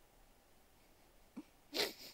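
Quiet room tone, then near the end one short, sharp burst of breath from a person, a sneeze-like huff.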